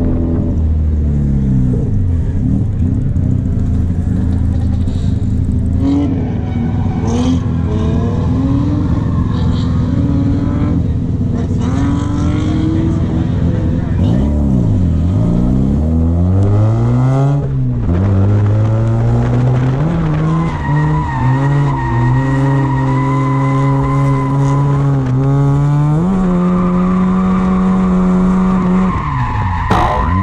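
Mazda RX-7's 13B rotary engine revving up and down hard under throttle, with sharp lifts off the throttle about halfway through. A steady high tyre squeal joins it in the second half as the car drifts.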